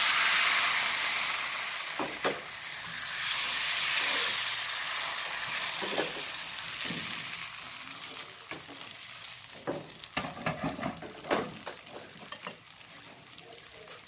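Bánh xèo rice-flour batter sizzling as it hits a hot frying pan on a gas stove: the sizzle starts loud, swells again as the pan is tilted to spread the batter, then gradually dies down. A few light knocks from the pan and utensils sound in the second half.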